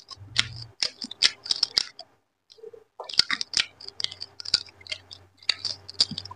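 Close-miked chewing of hand-fed rice and curry: a quick run of wet smacks and clicks from the mouth, breaking off for about a second midway before carrying on.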